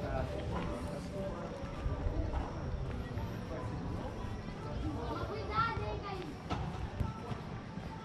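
Indistinct voices of people talking, over a steady low outdoor rumble, with a few footstep-like knocks on the paving.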